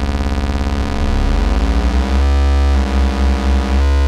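A held sawtooth bass note from the u-he Hive 2 software synthesizer, with a second sawtooth from its sub oscillator layered in and the oscillators beating against each other. The tone shifts as a setting is changed, with a heavier low end from about two seconds in.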